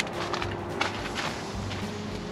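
Soft background music with a steady low bass line, with a few faint soft taps over it.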